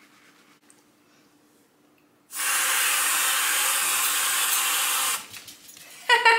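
Aerosol can of whipped cream spraying: one steady hiss of about three seconds, starting a couple of seconds in, with a few faint sputtering clicks as it stops.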